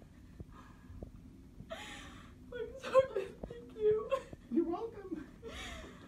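A young woman's wordless, emotional vocalizing starting about two seconds in: a breathy gasp, then a run of short, high, wavering whimpers and half-words. She is overwhelmed with emotion at the reveal of her new nose.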